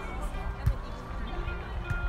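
Two dull thuds of a volleyball being struck by players' hands during a rally, the first under a second in and the second near the end, over background music.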